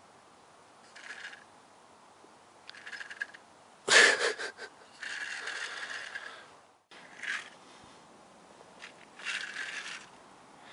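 Small electric model locomotive running in short spurts, its motor and gears whirring and cutting out again and again, loudest about four seconds in. The stop-start running is the sign of poor electrical contact, which the owner puts down to the track being too damp.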